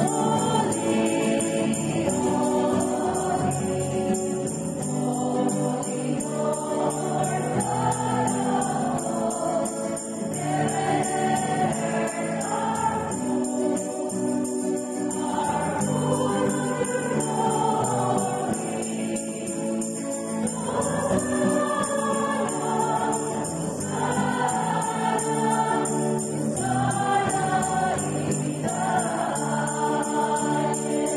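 A group of women singing a hymn together, accompanied by a strummed acoustic guitar, in sung phrases that rise and fall throughout.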